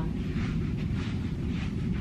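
Steady low rumble of room background noise.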